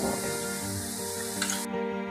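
Background music over the sizzle of onions frying in coconut oil in a kadai. The sizzling hiss cuts off suddenly near the end, leaving only the music.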